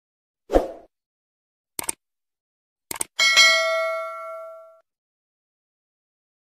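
Subscribe-button animation sound effects: a soft pop, then two sharp mouse clicks about a second apart, then a notification-bell ding that rings out for about a second and a half.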